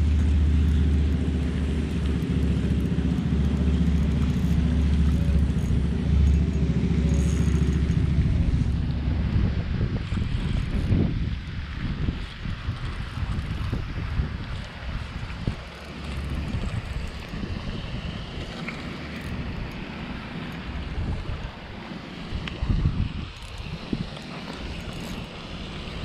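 A low, steady hum for the first several seconds, then wind buffeting the microphone in uneven gusts.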